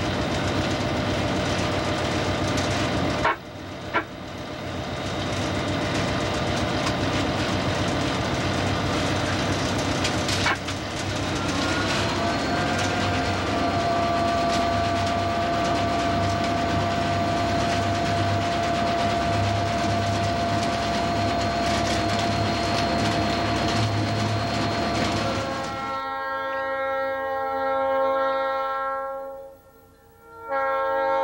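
Diesel locomotive rolling down the track, heard from the cab: a steady rumble and clatter with a few sharp clicks. About twelve seconds in, a whining tone rises and then holds. Near the end this gives way to a locomotive air horn sounding a chord in several long blasts.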